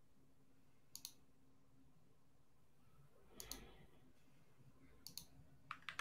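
Near silence with a handful of faint, sharp clicks, several in quick pairs: one about a second in, one around the middle, and a cluster near the end.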